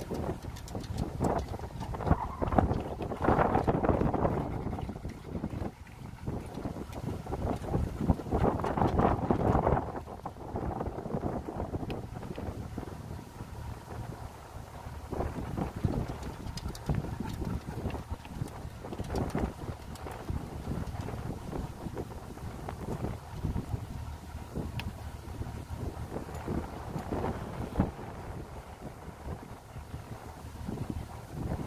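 Wind buffeting the microphone on a slow-moving boat, in gusts that are loudest a few seconds in and again around nine seconds, over the steady low hum of the boat's motor running at no-wake speed.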